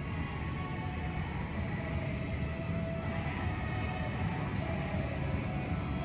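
Music from the hotel lobby's sound system carrying up through an open atrium to an upper floor, heard as a steady wash with a heavy bass. It is loud enough to reach rooms two levels above the lobby, which makes the lower floors noisy for light sleepers.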